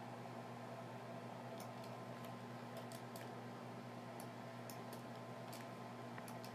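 Faint, scattered clicks of a computer mouse and keyboard, a dozen or so short taps, over a steady low hum.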